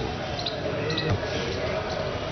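A short pause in a man's speech, filled by steady outdoor background noise with faint voices and a few short high ticks.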